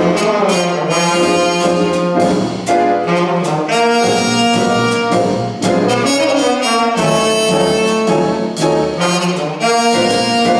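Small jazz band playing, with trumpet, trombone and tenor saxophone sounding a horn line together in held, harmonized notes that change about once a second. Upright bass, piano, archtop guitar and drums with cymbal strikes play beneath them.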